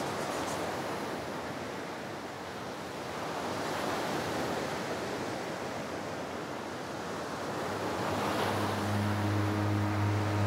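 Ocean surf breaking and washing on a beach, a steady rush that slowly swells and eases. About eight seconds in, a low held musical note comes in under it.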